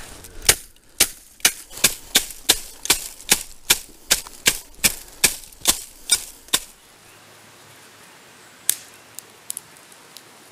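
A wooden thatcher's leggett beating the butt ends of water reed on a thatched roof, dressing the bundles up into place: about fifteen sharp knocks, some two and a half a second, that stop about six and a half seconds in. A few faint clicks follow near the end.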